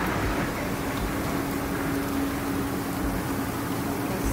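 Jetted bathtub's jet pump running with a steady hum, the jets churning the tub water.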